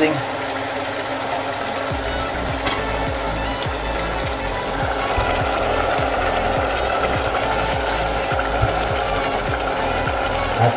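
Bird meat frying in a stainless steel pot, with steady fine crackling, under background music.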